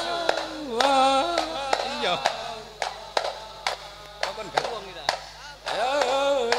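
Rebana frame drums struck by hand in a loose rhythm, accompanying a male voice singing a melismatic Islamic devotional chant through a handheld microphone and megaphone. The singing drops out midway while the drum strikes go on, and comes back in near the end.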